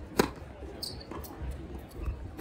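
Tennis racket striking the ball: one sharp pop of a topspin forehand about a fifth of a second in, with fainter knocks and a short high squeak later in the rally.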